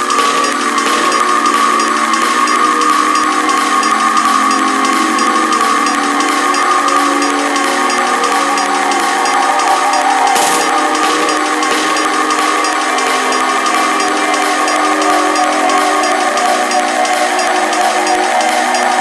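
Neurofunk drum-and-bass track in a breakdown: the drums and bass have dropped out, leaving a sustained synth drone of several held tones, with a brief noise swell about ten seconds in.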